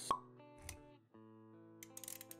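Intro jingle music with held synth-like notes and a sharp pop effect just after the start, then a soft low thump a little past halfway into the first second. The music drops out briefly at about one second and then comes back.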